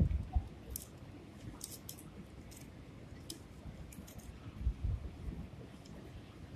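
Faint crinkling and short ticks of palm frond strips being twisted and wrapped by hand, with a soft low thump a little before the end.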